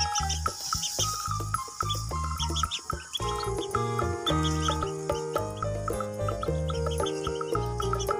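Background music with a low bass line that fills out with more notes about three seconds in, over which ducklings peep again and again in short, high chirps.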